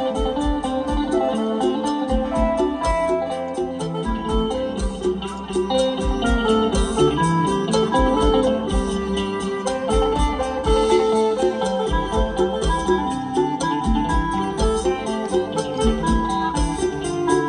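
Live band playing an instrumental opening piece through a PA: electric guitar picking a melody over a drum kit keeping a steady, fast beat, with keyboard.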